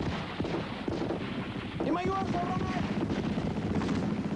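Sustained automatic rifle fire, many shots in rapid succession. About two seconds in, a shouted cry rises in pitch and is held for about a second over the shooting.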